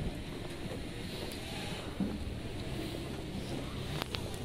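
The brass band's playing has just stopped and its last sound fades away right at the start. What follows is low, steady outdoor noise from the procession moving along the street, with one faint knock about two seconds in.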